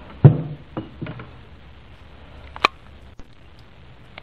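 Handling of machined aluminium parts on a workbench: one loud knock near the start, two softer knocks just after, and a single sharp click a little past halfway.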